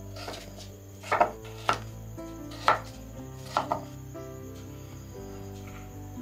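Broad-bladed kitchen knife chopping carrot into chunks on a wooden board: a handful of sharp chops, roughly a second apart, in the first four seconds, over background music.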